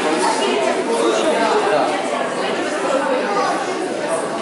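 Background chatter of many people talking at once in a large hall, steady throughout, with no single voice standing out.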